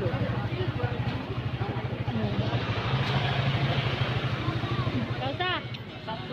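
A small engine running steadily with an even low throb, under faint talk. The throb thins out near the end.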